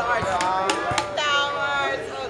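Three sharp knocks of game pieces slapped down on a table within about a second, over loud, drawn-out overlapping voices.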